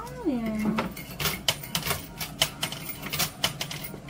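A short falling vocal sound, then light, irregular clicks and clinks of coins in an arcade coin pusher machine.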